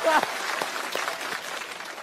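Studio audience applauding, the clapping dying away.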